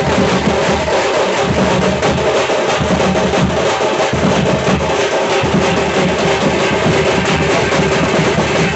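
A street drum band playing a fast, dense rhythm without a break. Small metal-shelled drums are struck with thin sticks, over a large frame drum and big bass drums.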